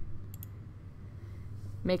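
A couple of quick computer mouse clicks about half a second in, over a steady low hum.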